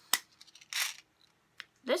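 Small plastic heart-shaped trinket box with a mirror, its lid clicking shut with one sharp click near the start. A brief rustle follows about a second in, then a faint tick.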